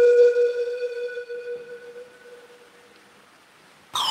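Pan flute holding one long, breathy note that fades away over about two and a half seconds, then a brief lull; a new phrase starts right at the end with a quick downward run.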